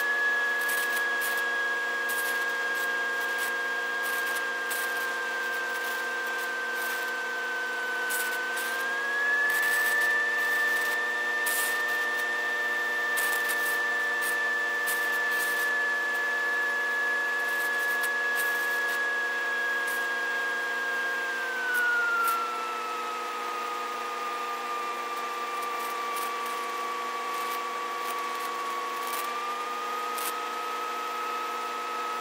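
Mooney M20J 201's four-cylinder Lycoming engine and propeller running during the landing, a steady hum with a high whine. The pitch rises briefly about eight seconds in, then drops about 21 seconds in as power comes back, with a brief louder moment there, and lifts slightly near the end on the rollout.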